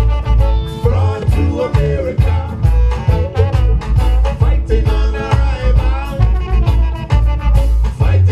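Reggae band playing live: trombone over electric guitar, bass guitar and drum kit, with a heavy pulsing bass line.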